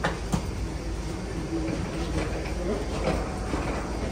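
Steady low rumble and clatter of passengers and wheeled carry-on bags moving along an airport jet bridge, with a couple of sharp clicks near the start and faint voices in the background.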